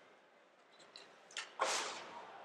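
A quiet moment, then a short rushing breath at a close microphone about a second and a half in: a broadcaster drawing breath before speaking.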